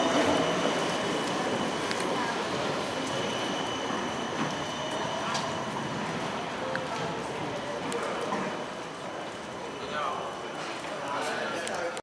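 Busy street at night: the voices of passing pedestrians over a steady background of traffic, with trams running along the rails.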